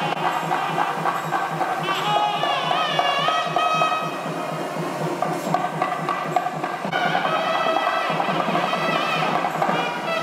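Traditional devotional music: a wavering, gliding melody over steady percussion beats.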